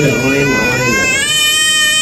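Toddler crying in distress as she gets vaccination injections in both arms, rising into one long, high-pitched wail held steady through the second half.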